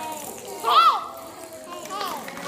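Children's voices chattering, with one loud, high child's call that rises and falls in pitch just under a second in.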